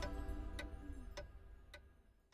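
A clock ticking a little under twice a second over the last held notes of music, the whole fading away to silence.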